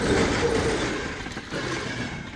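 Passenger train passing at speed close by: a steady rush of wheels on rails, loudest as the locomotive goes past at the start and easing as the carriages follow.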